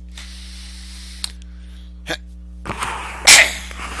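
A single loud sneeze about three seconds in, building briefly before the burst, over a steady electrical hum.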